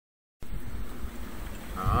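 A brief dead silence at an edit, then the steady rush of strong wind and rough sea around a sailboat, heavy in the low end. A man's voice begins near the end.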